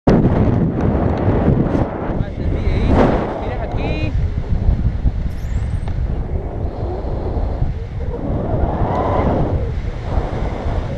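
Wind buffeting an action camera's microphone during a paraglider flight: a loud, uneven rumble that swells and eases, with a few brief snatches of voice under it.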